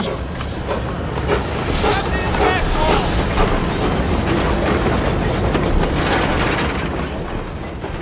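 Narrow-gauge light railway train rolling past, its wagons clattering and rattling steadily over the track, with men's voices faintly in the background.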